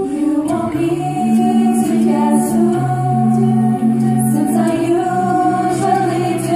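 Mixed high school jazz choir singing a cappella: voices only, with held chords that change about every second over a sung bass line.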